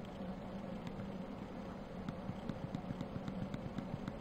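Steady low electrical or mechanical hum of background room noise, with a few faint clicks scattered through it.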